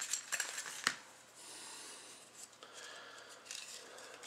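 Trading cards being handled: a few light clicks and taps, then a soft rustle of cards sliding against each other about a second and a half in, with small ticks after.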